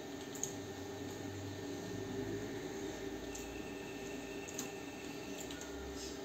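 Quiet steady background hum with a few faint small clicks, such as tweezers and thread touching the machine's metal tension parts.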